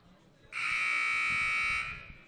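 Gym scoreboard horn sounding one loud, steady blast of just over a second, starting about half a second in and cutting off sharply. It is the signal before tip-off for the teams to break their huddles and take the floor.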